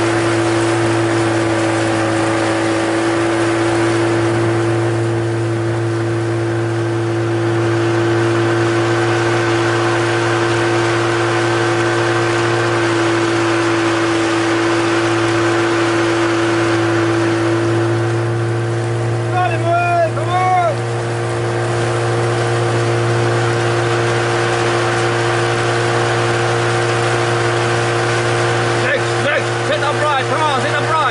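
Motorboat engine running at a constant speed, a steady drone with a fixed low hum and a higher steady tone over it.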